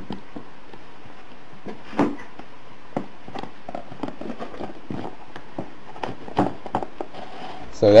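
Plastic DVD cases slid and pushed into a tight-fitting cardboard box compartment by hand: scattered scrapes and light knocks, the loudest about two seconds in.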